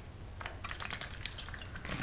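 Water sloshing faintly in a half-full plastic bottle as it is shaken to mix in food colouring, with a few small ticks of handling.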